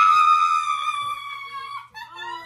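A woman's long, high-pitched excited scream: it jumps up sharply at the start, holds for almost two seconds with a slight fall in pitch, and stops just before several voices break in.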